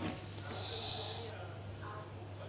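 A person's short breath through the nose, a hiss lasting just under a second starting about half a second in, over a steady low electrical hum.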